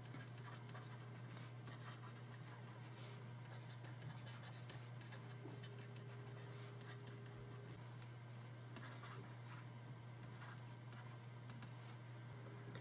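Faint scratching and light tapping of a stylus writing on a drawing tablet, over a steady low hum.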